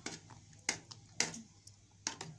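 Metal spoon stirring liquid in a metal saucepan, clinking sharply against the pan twice, about half a second apart, with a few faint scrapes and ticks between.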